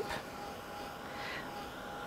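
Hand-held embossing heat gun running with a steady blower hiss and a faint steady whine, aimed at a paperclay piece to melt embossing powder.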